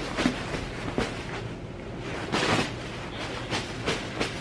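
A bag rustling in irregular bursts as a piece of clothing is pulled out of it.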